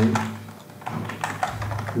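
Typing on a computer keyboard: a few separate keystrokes, including backspacing over characters.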